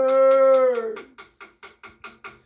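A voice singing one long held note that slides down and fades out just under a second in, over a steady frame hand drum beat of about five strokes a second; the drumming carries on alone after the voice stops.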